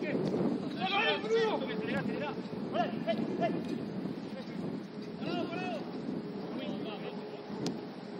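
Footballers' shouts carrying across the pitch: a few short calls about a second in, near three seconds and again about five and a half seconds in, over a steady rush of wind on the microphone.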